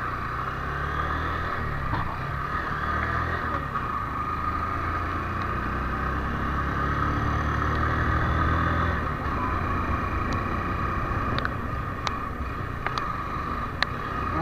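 Motorcycle engine running steadily while riding along a road, easing off about nine seconds in. A few short sharp clicks come near the end.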